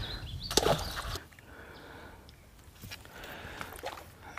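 A short splash as a small largemouth bass is dropped back into the pond at the boat's side, over wind buffeting the microphone that dies away about a second in.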